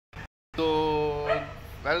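A man's voice holding one long, steady vocal note for just under a second, then fading, followed near the end by the start of speech.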